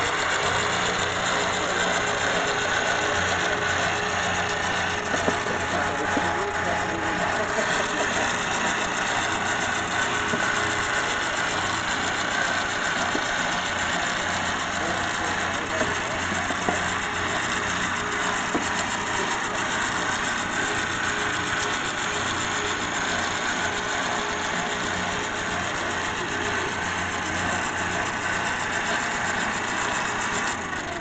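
Power drive turning a geared pipe threader as it cuts three-inch pipe threads, running steadily, with a few small clicks.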